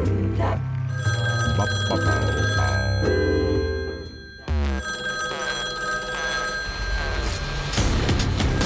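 Background music with a telephone ringing sound effect laid over it, in two spells: from about a second in for two seconds, and again from about five seconds in. The music drops away just before the midpoint and comes back suddenly.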